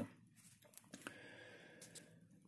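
Near silence: quiet room tone in a pause between speech, with a faint click about a second in.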